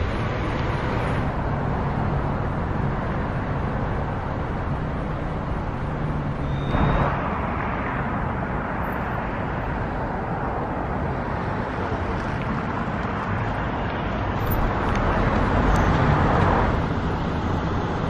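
Steady road traffic noise, swelling louder about a third of the way in and again near the end as vehicles pass.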